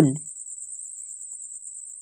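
A steady high-pitched whine with a fast, even pulse runs under the recording. The last syllable of a spoken word fades out just at the start.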